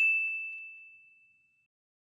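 A single high, bell-like ding ringing out and fading away within about a second and a half.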